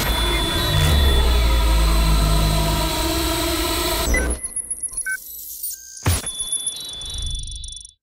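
Film-trailer score and sound effects: dense music over a heavy, sustained low bass that cuts off about four seconds in. Sparse electronic glitch beeps and high tones follow, with one sharp hit around six seconds, and everything fades out at the end.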